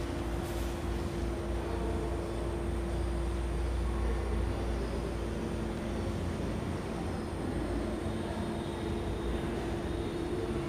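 Low background rumble with a constant hum over it; the rumble eases after about six seconds.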